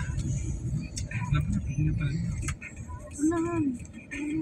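Low road and engine rumble heard from inside a moving car's cabin, easing off about two-thirds of the way through as the car slows, with brief murmured voices.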